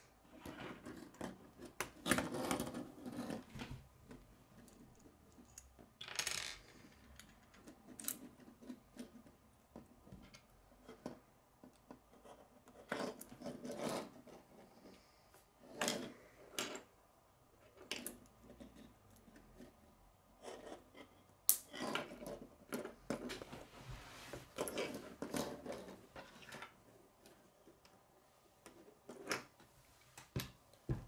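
Plastic K'nex pieces clicking and snapping together as they are assembled by hand, with parts knocking and rattling on a wooden tabletop. The clicks come irregularly, busiest about two seconds in and again in the second half, with one sharp loud click a little past twenty seconds.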